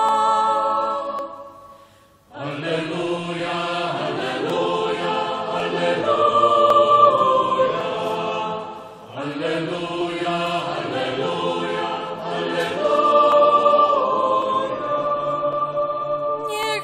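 A solo woman's sung phrase from the ambo ends in the first second or two. After a short pause, a church congregation and choir sing a refrain in two long phrases, the way a psalm response is answered at Mass.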